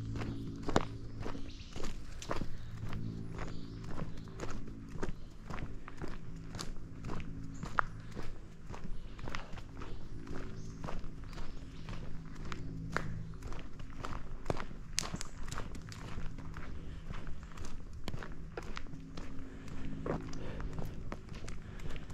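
A hiker's footsteps on a dirt forest trail, a steady walking pace of regular crunching steps.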